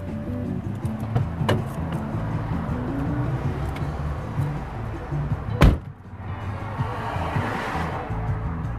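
Music playing inside a car, with one sharp, loud slam of a car door being shut a little after halfway through, followed by a swelling rush of noise.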